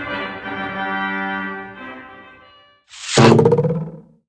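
Pipe organ, the 1907 Seifert German-Romantic organ, sounding sustained chords on its Trompete (trumpet) reed stop; the notes die away about two and a half seconds in. A short, loud burst of another sound follows near the end, louder than the organ.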